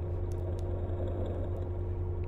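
Steady low mechanical hum with a faint constant tone above it, an industrial machinery ambience that does not change.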